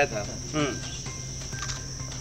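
Crickets trilling steadily in the background, a continuous high-pitched buzz, over a low steady hum.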